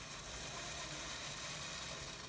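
Faint steady hiss from a steel pot heating on the stove.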